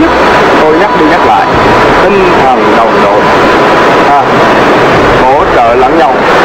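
A man's voice talking over a loud, steady rushing noise from the waterfall below the climbing cliff. A thin, steady high tone runs under it for about the first four seconds, then stops.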